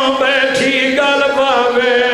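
A man chanting a mournful sung recitation into a microphone, drawing out long held notes that waver up and down in pitch.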